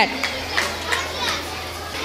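Children chattering and calling out in a large hall, with a steady low hum underneath.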